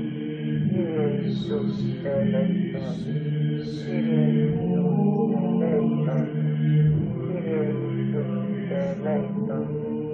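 Background music: a sung devotional chant over a steady low drone.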